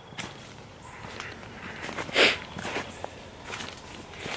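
Footsteps crunching and shuffling through dry fallen leaves on a steep dirt slope, with a louder rustle a little past halfway.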